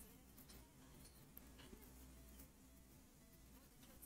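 Near silence: faint room tone with a steady low hum and a few faint ticks.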